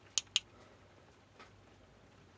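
Two sharp clicks about a fifth of a second apart: the power button on a Himiway 48 V e-bike battery pack being pressed and released. A fainter tick follows later.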